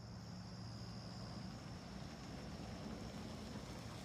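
Steady outdoor background: a low, even hum under a high, unbroken drone like insects calling.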